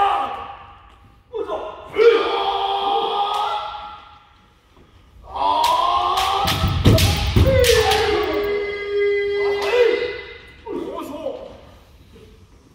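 Kendo kiai: loud drawn-out shouts from sparring fencers, one held for about two seconds. Around six to seven and a half seconds in, a quick run of sharp shinai strikes on armour with heavy stamping thuds on the wooden floor.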